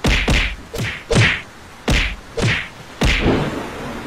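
Cartoon fight sound effects: a rapid series of about seven whacks and thuds, each with a swish, spaced roughly half a second apart and stopping about three and a half seconds in.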